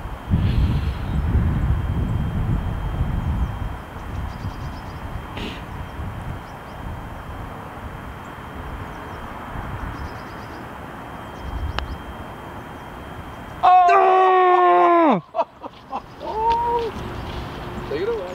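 Wind buffeting the microphone over outdoor quiet on a golf green. About 14 seconds in comes the loudest sound: a comic sound effect, one sustained note whose pitch sags and then falls away over about a second and a half, marking a missed putt. A brief second pitched sound follows.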